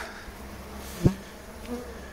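Honeybees buzzing at a hive entrance, a colony that is partly being robbed, with individual bees flying past close by. A single short knock about a second in.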